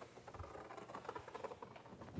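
Marker pen writing on a whiteboard: a quick, irregular run of faint short squeaks and taps as the strokes are drawn.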